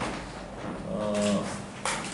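A man's short drawn-out hesitation sound, a held vowel of under half a second between phrases, followed by a single short click near the end.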